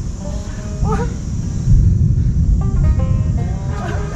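Bamboo flutes on a flute kite whistling in several held pitches that step and waver, over heavy wind rumbling on the microphone.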